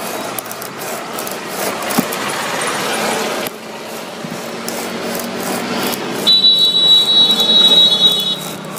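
A hand blade scraping across old tyre rubber, shaving the piece down, with an uneven rasping that eases off after about three and a half seconds. About six seconds in, a loud high steady tone starts and holds to the end.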